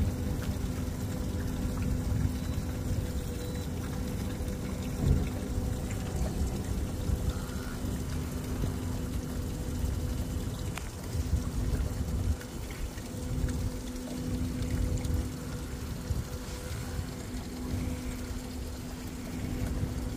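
Water lapping and sloshing against a small boat's hull, with wind rumbling on the microphone and a steady low hum. There is a single knock about five seconds in.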